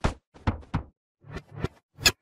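A chopped-up, distorted logo sound effect: about six short, sharp knock-like hits in two seconds, with silent gaps between them.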